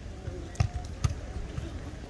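A beach volleyball being struck by players' hands and forearms: two dull thumps about half a second apart, over faint distant voices.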